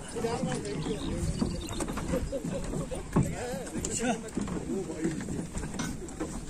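Voices of several people talking and calling out at a moderate level, none of the words clear.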